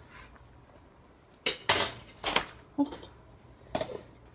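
A stirring utensil knocking against a metal saucepan on the stove, then the pot's lid set on it: a handful of sharp clanks starting about a second and a half in, the last near the end.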